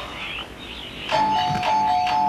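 A doorbell rings loudly about a second in with a steady two-note ring. Before it, birds chirp faintly.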